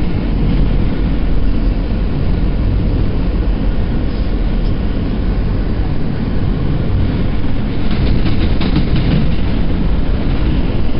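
New York City subway train car running at speed, heard from inside the car as a steady loud rumble of wheels on rail, with a quick run of wheel clacks near the end.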